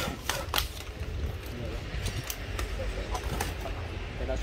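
Hard plastic cordless drill bodies knocking together as they are shifted and set down on cardboard. There are a few sharp clacks in the first half-second, then quieter light ticks of handling over a low steady rumble.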